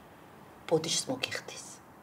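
Only speech: a woman says one short phrase, about a second long, near the middle.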